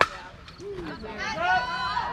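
A softball bat hits a pitched softball with one sharp crack. From about half a second in, several spectators shout and cheer, loudest around the middle.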